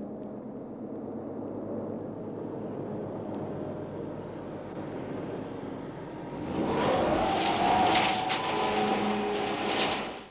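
Mack garbage truck's engine running steadily, then growing louder about six and a half seconds in as the truck pulls forward, its pitch rising as it revs. A few short clanks or ticks come near the end.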